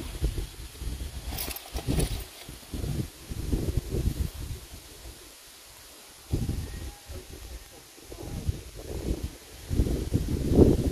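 Wind buffeting the microphone in uneven gusts, easing off briefly around the middle before picking up again.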